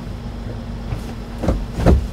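Kia truck's engine idling, a steady low hum heard from inside the cab, with two short thumps near the end.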